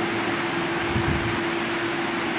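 Steady background hiss with one constant low hum underneath. It is even and unbroken, like a fan or air conditioner running.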